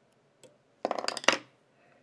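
A brief clatter of small hard objects being handled: one faint click, then a quick run of sharp clicks and rattles lasting well under a second.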